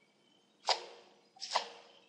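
Two computer mouse clicks, a little under a second apart, each short and sharp with a brief tail.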